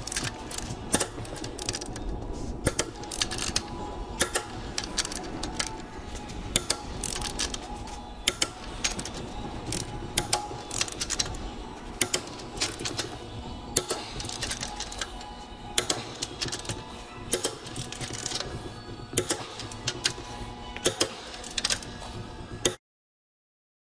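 Torque wrench ratcheting on the main bearing cap bolts of a Cummins ISL engine block, sharp clicks in irregular runs as the bolts are run down to 125 foot-pounds.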